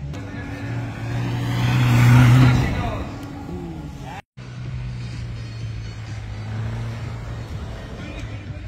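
A car engine running hard on a loose dirt autocross course, with tyre and gravel noise, swelling to its loudest about two seconds in as the car passes close, then fading. After a sudden break a little past four seconds, a car engine is heard again, running steadily.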